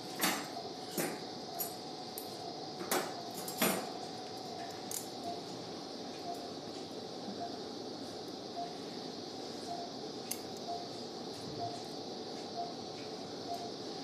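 Stainless-steel surgical instruments (needle holder, scissors and hemostat) clicking and clinking as skin sutures are tied and trimmed. The sharpest clicks come in the first four seconds and a few more follow later. A faint beep from the patient monitor repeats steadily about twice a second throughout.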